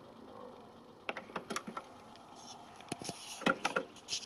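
Nakamichi BX-2 cassette deck's tape transport clicking in short clusters as it goes into play after the Play button is pressed, over a faint steady running noise. The deck is faulty: one capstan turns and the other does not.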